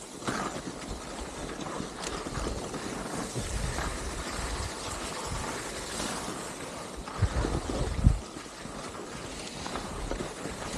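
Skis sliding over tracked snow with wind buffeting the camera microphone, and two low thumps about seven and eight seconds in.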